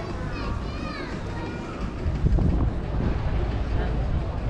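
Outdoor square ambience of people's voices, with a child's high-pitched calls in the first second or two and a low rumble from about two seconds in.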